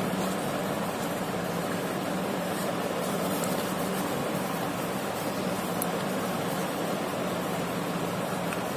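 Steady, even background hiss with a faint low hum that does not change.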